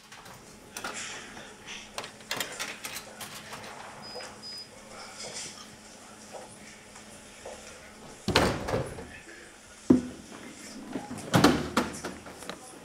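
A snack vending machine being used: small clicks and knocks of handling and button presses, a brief short beep about four seconds in, then three heavier knocks in the second half as a purchase drops and is taken from the delivery tray.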